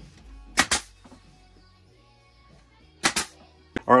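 Nail gun firing twice into wood planks, about two and a half seconds apart, each shot a sharp double crack.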